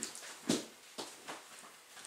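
A few short, soft handling knocks and rustles, about four in two seconds, the loudest about half a second in, as a small camera battery is picked up and handled.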